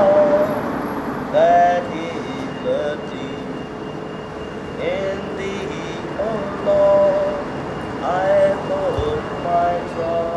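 A man's voice in short, drawn-out sung phrases, several notes held and gliding, over the steady noise of road traffic.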